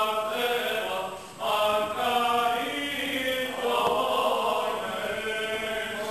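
Greek Orthodox liturgical chanting, sung in long held notes with a short pause about a second and a half in.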